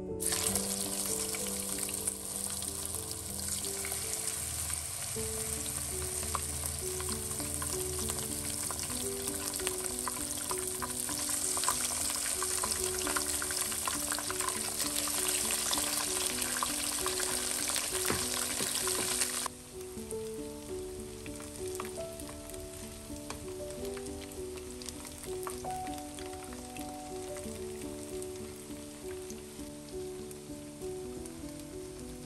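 Battered pieces deep-frying in hot oil in a wok, a dense steady sizzle and crackle. About two-thirds of the way through the sizzle drops away suddenly to a much quieter crackling.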